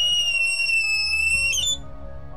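Handheld personal attack alarm (the Shriek Alarm) sounding one loud, high-pitched, steady shriek that cuts off about one and a half seconds in. Soft background music runs underneath.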